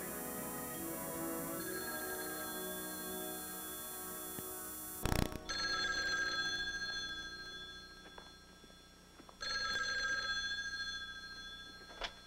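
Soft background music for the first few seconds, then after a cut a telephone bell rings twice, each ring about two seconds long and fading away.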